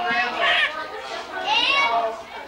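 A baby's high-pitched squeals and babble: two short vocal cries, one about half a second in and one near the end.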